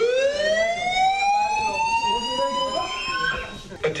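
Building evacuation alarm sounding a single slow whoop: one tone sweeping steadily upward for about three and a half seconds, then cutting off. It is the signal to leave the building.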